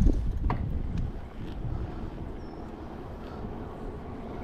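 Low rumble of wind on the microphone and of the ENGWE L20's 20×4-inch knobby fat tyres rolling on asphalt as the e-bike pulls away under pedal power, with a couple of light clicks in the first half-second. The motor, at pedal-assist level 1, is barely heard.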